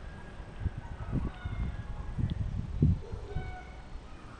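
Irregular low thumps of footsteps and handling while walking, with two short, faint, high-pitched calls in the background, one about a second in and one near the end.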